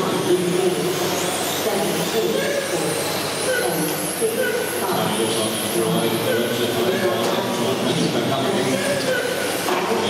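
Electric 13.5-turn brushless RC touring cars racing on an indoor carpet track, their motors whining high and rising and falling as they pass. The whine sits under a steady hum of voices that carries through the hall.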